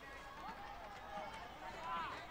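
Faint, overlapping shouts and calls from several distant voices, players and onlookers around an open-air football pitch just after a goal.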